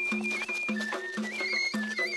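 Tajik eagle-dance music: a high eagle-bone flute melody moving in quick ornamented steps over a steady drum beat.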